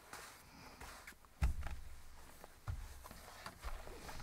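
Cotton quilt block being flipped and handled on an ironing board, with faint fabric rustling, a few light clicks and two soft low thumps, one about a second and a half in and one near three seconds in.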